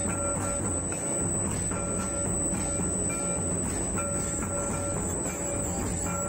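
Live Santal dance music: traditional drums, a big kettle drum and a barrel drum, played steadily under a high melodic line of held notes repeating in short phrases.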